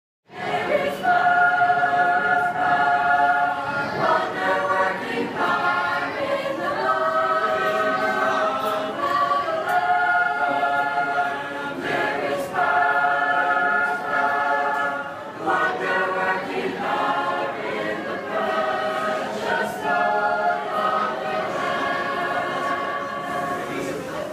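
A mixed choir of men and women singing a Christian hymn unaccompanied, in held, sustained notes. The singing starts out of silence just after the beginning.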